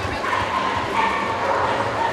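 Dogs barking and yipping in a crowded show hall, over the steady chatter of people.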